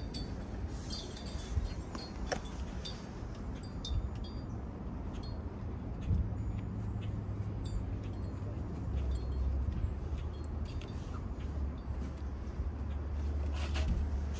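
Light, scattered high-pitched tinkling and clinking like chimes, over a low steady rumble that grows stronger in the second half.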